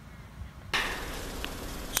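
Faint outdoor background that jumps abruptly to a louder, steady hiss about two-thirds of a second in, with two light clicks, the second just before the end.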